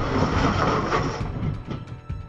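Vehicle driving noise as picked up by its dashcam: low engine and road rumble, with a rushing hiss that cuts off suddenly a little past halfway.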